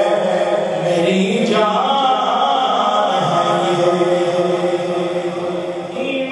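A man sings a devotional naat solo into a microphone, unaccompanied, with long held notes that slide and waver in pitch in a chant-like melody.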